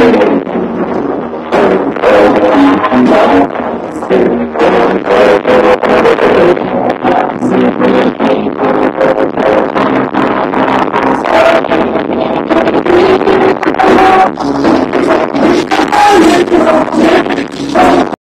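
Indie rock band playing live through the stage PA: electric guitars and drums, loud and continuous.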